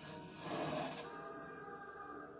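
A cartoon film soundtrack played through a television speaker: a brief rushing noise, loudest about half a second in, gives way to steady held tones of music.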